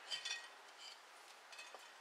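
Faint handling sounds: a few light rustles and taps as rosemary sprigs are handled in a glass bowl and a dark glass bottle is picked up, mostly in the first second.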